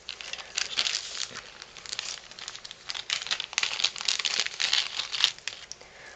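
Clear plastic bag crinkling and rustling in a dense, irregular crackle as hands work beaded trim out of it.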